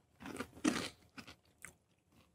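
Quiet, close-miked chewing and crunching from someone tasting hot sauce: two short crunchy bursts in the first second, then a few faint mouth clicks.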